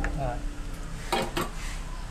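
A cut-glass bowl clinking and knocking as dried shrimp are tipped out of it into a plastic mixing bowl, with one sharp click at the start and a quick cluster of clicks about a second in.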